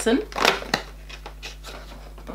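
Cardboard advent calendar being handled, with a few sharp clicks and scrapes of cardboard in the first second as a finger works at a perforated door.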